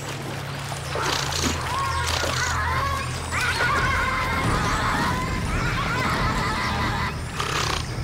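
Giant otters screaming at a caiman: high, wavering, whinny-like calls over splashing water, repeated from about a second in until near the end. A low music drone runs underneath.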